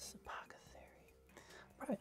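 Faint, brief swishes of trading cards sliding over one another as a hand flips through them.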